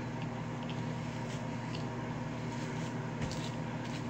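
A hairbrush drawn through long hair in a few faint, short strokes over a steady low electrical or fan hum.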